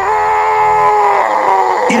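A dramatized giant's scream of pain: one long, loud cry held on a single pitch for nearly two seconds, sagging slightly near the end, the sound of the blinded one-eyed giant.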